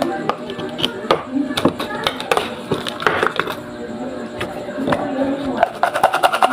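Metal spoon clinking and scraping against a plastic seasoning jar and a ceramic mug while barbecue seasoning powder is scooped out: a series of sharp, irregular clicks, with a quick run of clinks near the end.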